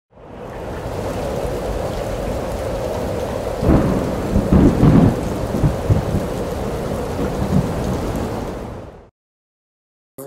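Thunderstorm sound: steady heavy rain with rolling thunder, loudest about four to five seconds in, fading in at the start and fading out near the end.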